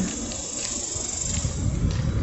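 Wind rumbling on a phone's microphone, with a faint steady hiss and a few faint ticks.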